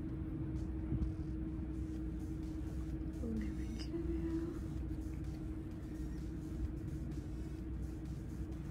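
Steady low room rumble with a constant faint hum, with a few faint, brief pitched sounds about three to four seconds in.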